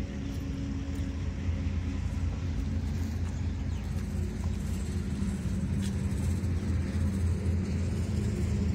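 A vehicle engine idling, a steady low rumble.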